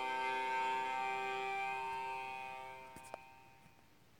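The closing held chord of a recorded song playing through a phone's music app, its sustained notes fading away over the second half. A few faint clicks come about three seconds in as the music dies out.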